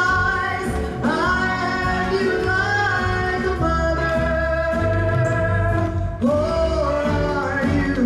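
Solo voice singing a slow ballad into a microphone over musical accompaniment, holding long notes with vibrato. A steady bass line runs underneath.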